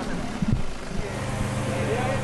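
An excavator's diesel engine running at a steady speed, a constant low hum that sets in about a second in. Before it, voices and a few knocks.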